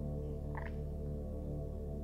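Soft ambient meditation music: a steady drone of held tones under a low pulsing note. A short faint sound comes about half a second in.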